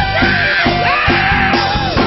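Upbeat rock-and-soul band music with a steady beat and a loud sung vocal.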